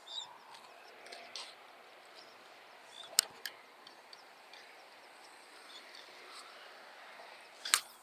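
Faint steady background noise broken by a few sharp clicks: two close together about three seconds in, and one more near the end.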